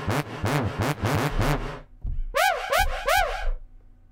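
A reFX Nexus 2 software synthesizer preset from the Christmas 2017 expansion playing quick arching swoops that glide up and back down in pitch, about four a second. A lower run fills the first two seconds; after a brief gap come four higher swoops.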